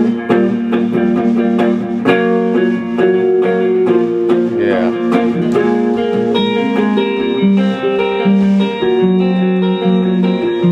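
Electric guitar and keyboard playing a song together live in a small room, with steady strummed chords and held notes.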